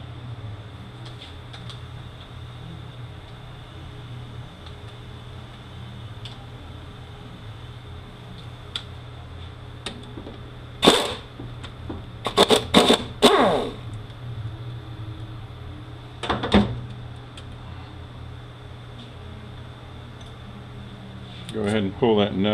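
A handheld air tool running in short bursts as it spins out valve-body bolts. There is one burst about halfway through, then a quick run of several, and one more a few seconds later, over a steady low hum.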